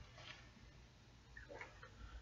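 Near silence: room tone with a low hum and a few faint clicks near the end.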